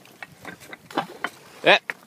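A few faint, scattered clicks and rustles, handling noise from a handheld camera and jacket during a rock throw, then a man says a short 'yep' near the end.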